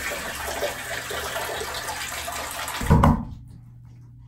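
Shower water running in a small tiled shower stall, an even hiss. Just before three seconds in there is a short, loud thump, and then the water sound breaks off suddenly.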